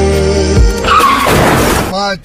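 Song music with sustained notes and a steady bass, broken off about a second in by a loud, noisy sound effect with a short falling squeal that stops abruptly.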